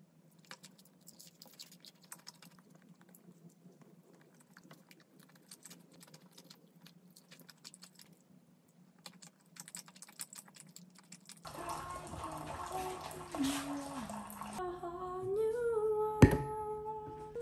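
Faint, scattered clicky chewing and mouth sounds of someone eating soft snacks and sauced food off a fork. About eleven seconds in, a simple gentle melody starts and is louder than the eating.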